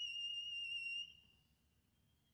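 Alto saxophone holding a very high, thin altissimo note at the top of an upward slide, cutting off about a second in.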